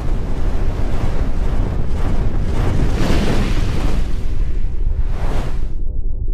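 Logo intro sound effect: a deep rumble under rushing whooshes that swell in the middle and again near the end. The hiss cuts off suddenly just before the end, leaving a low drone.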